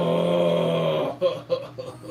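A man's long drawn-out groan of frustration, held on one steady pitch, which breaks off about a second in into a few short breathy bursts. He has just realised he made a mistake in the build.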